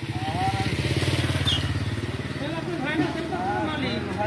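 Motorcycle engine running steadily close by, a low pulsing drone, with people talking over it.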